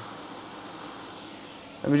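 Steady hiss of a hot air rework station's airflow blowing on a circuit board while a component is being heated for removal.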